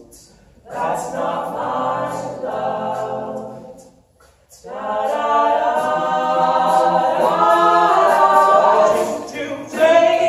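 Male a cappella vocal group singing in harmony, pausing briefly twice: just after the start and about four seconds in. The phrase after the second pause is fuller and louder.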